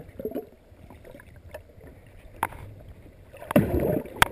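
Muffled water noise heard through an underwater camera: a low rumble with a few sharp clicks, then a louder rush of water with knocks near the end.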